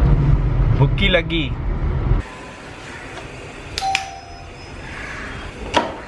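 Car cabin road noise rumbling for about two seconds, then cutting off suddenly to a quieter room. In the quieter part comes a short electronic beep about two seconds later, and a sharp click near the end.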